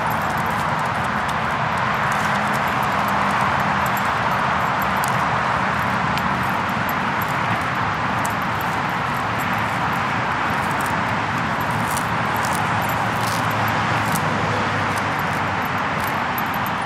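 A steady, even rushing noise with a faint low hum beneath it, unbroken throughout, with a few faint clicks.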